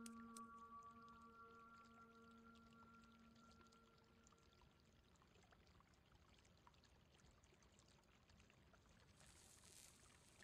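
Near silence on a film soundtrack: a faint held chord of steady tones fades away over the first four seconds or so. Quiet room tone with faint scattered ticks follows, and a soft hiss swells near the end.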